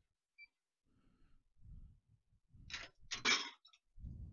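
Scrapes and clicks of a laser cutter's metal parts being moved by hand, soft at first, then two short louder rasping bursts about three seconds in.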